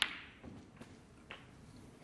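Snooker balls clicking as a shot is played: a sharp click of ball on ball right at the start, fading quickly, then a fainter click about a second later as the potted black reaches the pocket.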